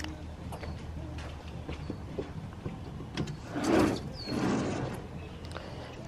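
A sliding mesh screen is pushed open along its track, with a longer scraping slide about three and a half seconds in and a shorter one after it. Short high chirps that drop in pitch come several times over a steady low hum.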